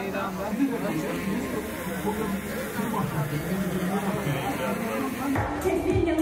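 Indistinct chatter of several people talking at once. Near the end the sound changes abruptly and a louder, nearer voice takes over.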